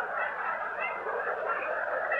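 An audience laughing together in a lecture hall, a steady wash of many voices.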